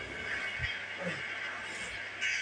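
Quiet room background noise with a single soft, low thump about two-thirds of a second in.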